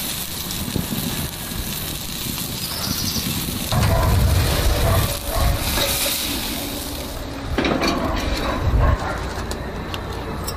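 Ribeye steak sizzling on a grill grate over a charcoal fire, a steady hiss, with two louder rushes about four seconds in and again near the end as the steak is turned with tongs over the flames.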